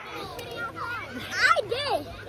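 Children's high, excited voices shouting and laughing in a swimming pool, loudest about a second and a half in.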